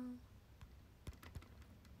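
Near silence with low room hum: a few faint, sharp clicks between about half a second and a second and a half in, after the end of a spoken word at the very start.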